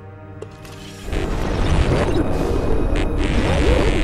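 Movie soundtrack: a low, steady hum for about a second, then a louder, dense mix of music and noise with wavering tones.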